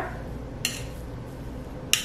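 Metal fork mashing boiled potatoes in a plastic bowl, with two short clicks of the fork against the bowl, one about half a second in and one near the end. A low steady hum runs underneath.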